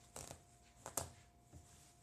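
Bimini-top canvas rustling and scraping under the hands in three short bursts, the sharpest about a second in, as the seam stitching is pulled apart; the thread is sun-rotted and falling apart.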